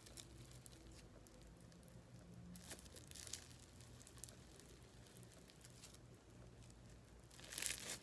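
Slime being stretched by hand, mostly very faint with a few soft clicks. Near the end it is squeezed together, giving a louder run of crackling, popping clicks.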